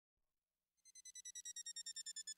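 A high electronic tone that pulses rapidly, about nine times a second, fading in just under a second in, growing louder and sliding slowly down in pitch.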